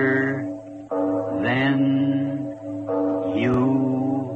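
Music: a looped phrase of held tones with sliding pitches, repeating about every two seconds.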